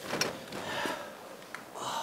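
Hard, gasping breaths of a bodybuilder recovering right after a set of bent-over dumbbell lateral raises, with a couple of light clicks.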